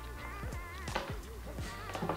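Background music with a wavering high melody.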